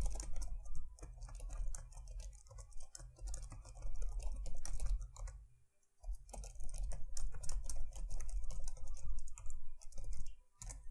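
Computer keyboard typing in quick runs of keystrokes, with a brief pause about six seconds in and a low rumble under the clicks.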